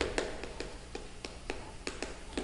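Chalk writing on a chalkboard: a string of light, irregular taps, about three or four a second, as the chalk strikes the board with each stroke.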